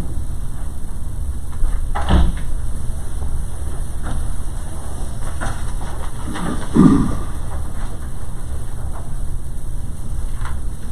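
Steady low room hum while papers are handled close to the desk microphones, with a sharp knock about two seconds in and a short dull thump near seven seconds.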